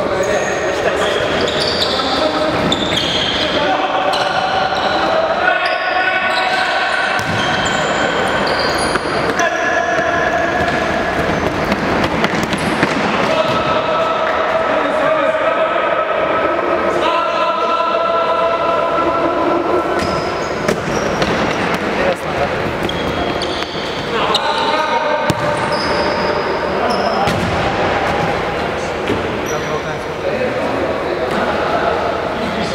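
Futsal players shouting and calling to each other, echoing in a large gym hall, with the ball's kicks and bounces thudding on the wooden floor.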